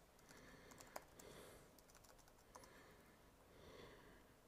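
Faint typing on a computer keyboard: a handful of scattered key clicks, the sharpest about a second in.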